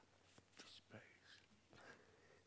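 Near silence: quiet room tone with a few faint whispered or murmured words.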